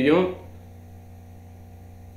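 A man's speaking voice trails off in the first half second, leaving a steady low hum in the recording.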